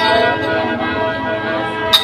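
Khaen (Lao bamboo free-reed mouth organ) holding a sustained chord of several steady tones at once. Two sharp clicks cut in, one at the start and one near the end.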